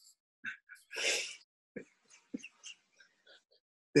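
Quiet, breathy chuckling: a short laughing exhale about a second in, then a few faint, brief breaths and mouth sounds.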